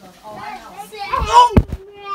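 A small child's voice, wordless, with a loud thump about one and a half seconds in.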